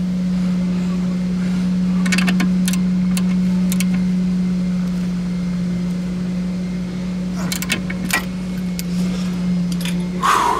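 Clusters of sharp metallic clicks from a socket ratchet and wrench working a nut at the upper control arm of a front suspension, about two, four and seven and a half seconds in. A steady low hum runs underneath.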